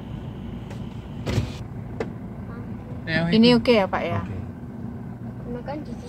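Steady low rumble inside a car's cabin as it rolls slowly, with a short burst of noise about a second in and a sharp click at two seconds.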